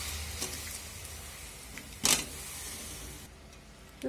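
Pieces of bottle gourd tipped from a plate into a pan of hot fried masala: a quiet sizzle, a brief loud burst of sizzling and clatter about two seconds in as they land, then the sizzle dies down.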